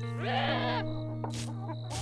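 A cartoon mutant chicken creature gives one short, warbling squawk that rises and then falls in pitch, over steady background music. Two faint high ticks follow later.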